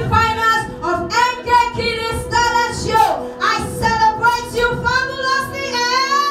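A woman singing solo into a handheld microphone over a backing accompaniment of held notes, with a falling slide in her voice about three seconds in.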